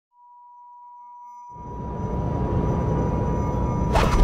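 A steady, high, pure electronic tone. About a second and a half in, a low rumbling swell joins it and grows steadily louder: the build-up of an animated logo intro's sound effect.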